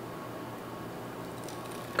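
Steady low room hiss with no distinct event, well below the level of the speech around it.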